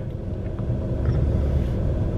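Steady low rumble of a car idling, heard from inside the cabin.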